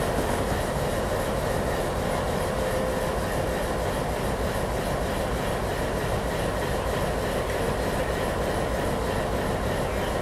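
MLW M420 diesel locomotive creeping toward the microphone at low speed, its engine running steadily.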